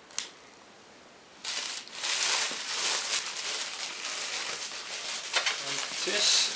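A plastic bag rustling and crinkling as it is handled and pulled open around a boxed power supply. It starts about a second and a half in, after a single click, and goes on loud and crackly.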